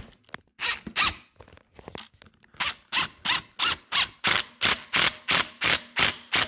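Cordless impact driver hammering a coarse-threaded bolt straight into a pre-drilled hole in hard brick, in short clicking bursts that settle into a steady run of about three a second. The clicks are a sign of serious resistance: the bolt is no longer turning and is gripped well without an anchor.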